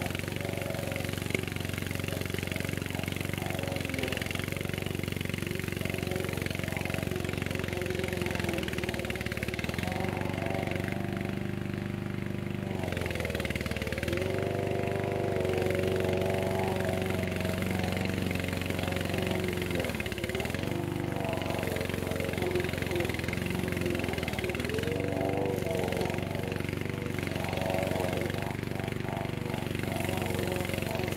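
Petrol engine of a tracked Vigorun VTC550-90 remote-control mower running steadily while cutting long grass. Its note dips briefly under load and recovers about three times.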